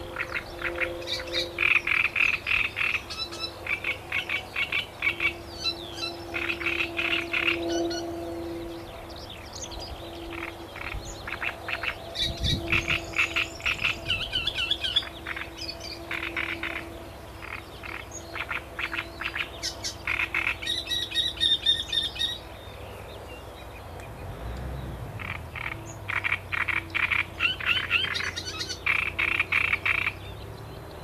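A chorus of frogs croaking: rattling calls in bouts of a second or two, repeated again and again with short pauses between.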